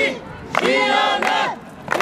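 A group of marchers chanting a slogan in unison, the shouted phrases broken by short pauses, with sharp handclaps among the voices.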